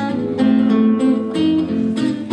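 Solo nylon-string classical guitar played fingerstyle: a flowing line of plucked notes ringing over lower sustained notes.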